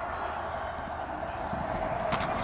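Steady stadium crowd noise, a constant even hum with no single sound standing out, heard through the broadcast while a play is run.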